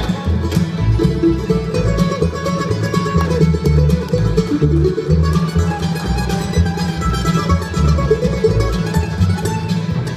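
Live bluegrass band playing an instrumental passage on banjo, mandolin, acoustic guitar, fiddle and upright bass. Bass notes pulse on a steady beat under the plucked melody.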